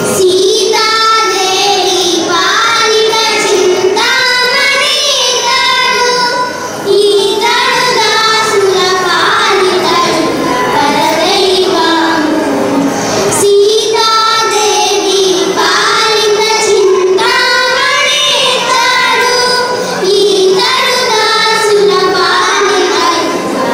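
A group of young girls singing a Carnatic song together into microphones, one continuous melodic line with a brief break about two-thirds of the way through.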